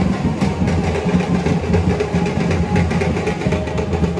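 Loud music played through a loudspeaker, with a heavy bass and a drum beat, the low end muddy and distorted.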